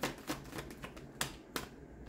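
A tarot deck being shuffled by hand: a run of light, sharp card clicks a few times a second, stopping about a second and a half in.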